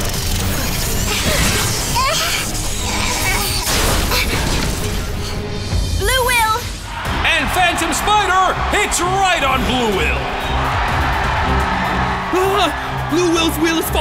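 Cartoon battle sound effects, crashing and shattering, over dramatic background music, then from about six seconds in an excited voice calling out over the music.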